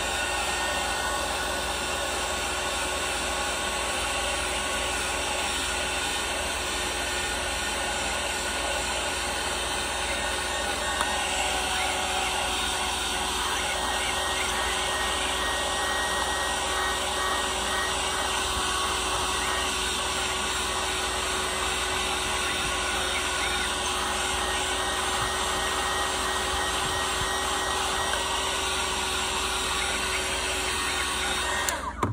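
Small handheld heat gun running steadily, its fan blowing hot air with a faint steady hum, heating the edges of a phone to soften the glue under the back glass.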